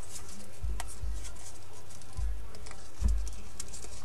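Paper rustling and crinkling in small scattered crackles as an origami swan's folded beak is pulled out. Three dull bumps of handling come about half a second, two seconds and three seconds in.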